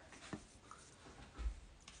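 Almost silent, with faint handling noise: a small click about a third of a second in and a soft low thump about a second and a half in.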